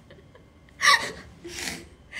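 A young woman's sharp, breathy gasp of stifled laughter about a second in, followed by a softer breathy laugh.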